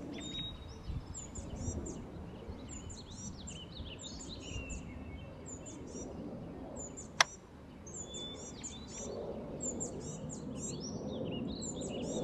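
Small birds chirping repeatedly in short high calls over a steady low background of outdoor noise, with one sharp click about seven seconds in.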